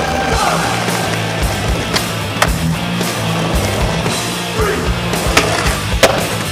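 Skateboard wheels rolling on asphalt, with a few sharp clacks of the board hitting the ground about two seconds in and again after five seconds. Music with a steady bass beat plays under it.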